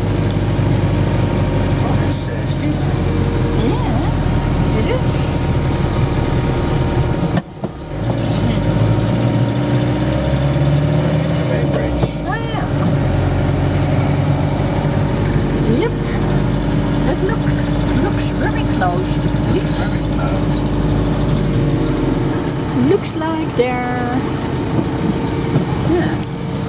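Campervan engine and road noise heard from inside the cab while driving: a steady drone, with a brief drop about a third of the way through.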